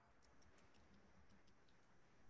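Near silence: faint room tone with a few faint, light ticks.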